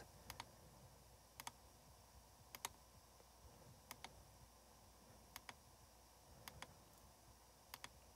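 Faint computer mouse clicks, about seven of them, most heard as a quick double tick, spaced roughly a second apart over near silence.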